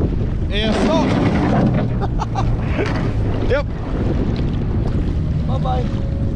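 Jet boat engine running with heavy wind noise on the microphone, a steady low drone.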